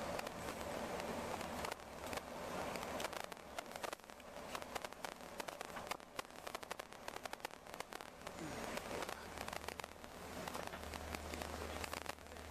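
Moving tour bus heard from inside the cabin: a steady rush of road noise with many small crackles and clicks through the middle, and a low engine drone that grows stronger in the last few seconds.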